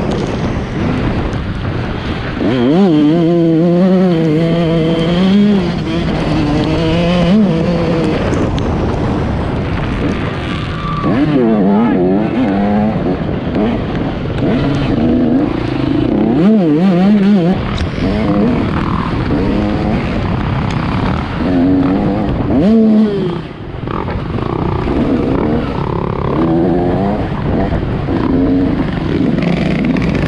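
Dirt bike engine heard from the rider's helmet camera, its pitch rising and falling again and again as the throttle opens and closes and gears change, over a constant noisy rush.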